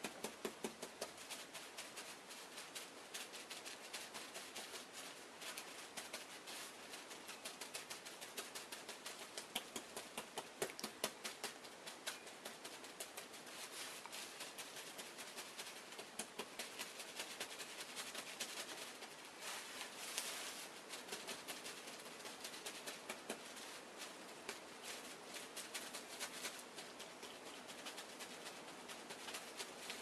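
Wet, soapy hands patting and pressing a damp wool felt heart on bubble wrap: a fast, faint run of soft pats, several a second.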